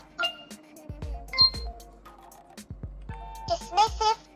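Eiliko desktop companion robot making electronic sounds: faint steady tones with a string of ticking clicks, and a bright chime about a second and a half in. Near the end, its high-pitched synthesized voice starts up.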